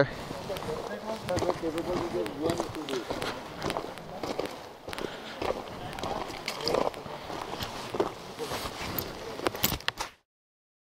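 People talking at a distance, with scattered clicks and crunches of footsteps on gravel.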